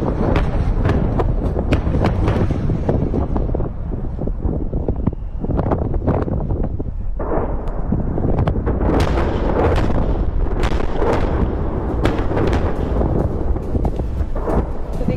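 A series of bomb blasts from airstrikes: overlapping booms and a continuous heavy rumble with many sharp cracks, easing a little about four seconds in and building again after about nine seconds.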